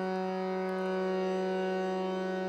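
Harmonium holding steady sustained notes as a drone, several reedy tones sounding together without change.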